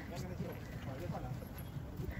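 Indistinct voices over a low rumble, with light irregular knocks.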